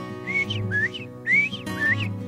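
Northern bobwhite quail giving covey calls: a series of short whistled notes that rise in pitch, about four in two seconds.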